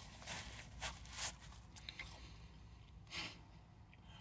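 Faint rustling of a paper napkin wiped across the face: a few soft, short scuffs in the first half and one more near the end.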